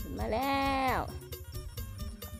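A water buffalo calling once: a single drawn-out call of under a second that rises, holds steady and falls, over background music.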